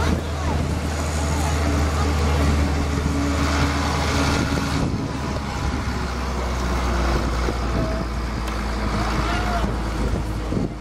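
Engine of the tractor pulling a hayride wagon, a steady low drone that drops in pitch about halfway through as it eases off.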